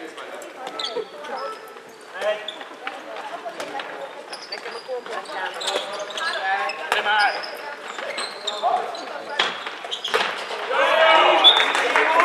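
Handball bouncing on a wooden sports-hall floor during play, with players' shouts ringing in the hall. The voices grow louder near the end.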